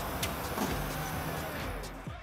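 A car pulling up slowly and stopping, its engine and tyres a steady noise that fades near the end.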